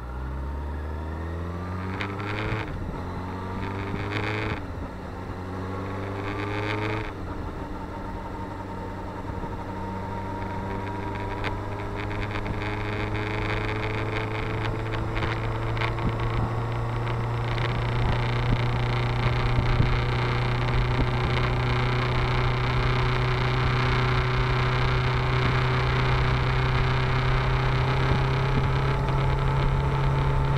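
Honda CBR600 F4i's inline-four engine pulling away and working up through the gears. The revs rise and drop with a quick upshift three times in the first seven seconds, then climb slowly as the bike gathers speed. Wind noise on the microphone builds over the second half.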